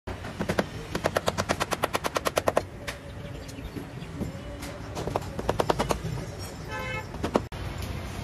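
A hammer tapping quickly and lightly, about eight blows a second for under two seconds, then a looser run of taps a few seconds later.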